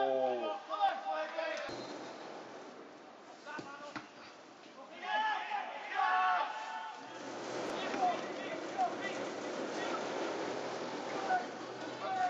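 Football match sound: indistinct shouts from players and spectators near the start and about halfway through, a few dull thuds, and a steady background murmur in the second half.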